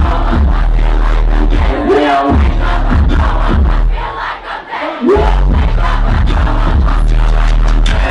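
Loud live music with a heavy bass line played over a concert PA, with a large crowd yelling along. About four seconds in the bass drops out and the music thins for about a second, then the bass comes back in hard.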